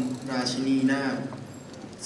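Speech only: one person reading aloud in Thai, the words trailing off a little past halfway.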